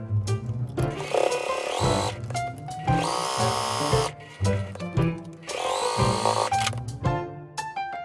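Domestic electric sewing machine stitching bias tape onto fabric in three short runs of about a second each, over light background music with plucked, piano-like notes.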